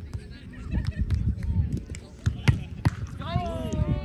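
Volleyball rally: the ball is struck several times with sharp slaps, the loudest about two and a half seconds in, and near the end a player lets out a long call that slowly falls in pitch.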